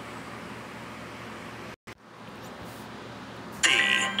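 Steady hiss from the played-back logo clip's soundtrack, cutting out briefly to silence a little before two seconds in. Near the end a louder sound with several held tones starts.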